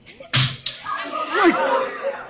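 Two sharp smacks about a third of a second apart, the first the loudest, followed by a voice crying out with a sweeping, rising and falling pitch.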